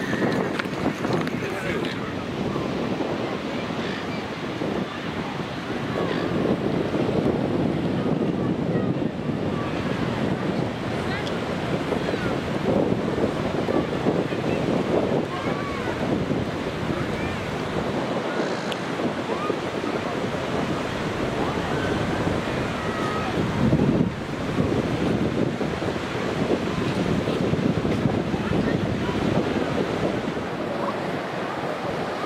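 Surf washing onto a sandy beach, with wind on the microphone and the scattered chatter of people around, a steady noise that swells gently now and then.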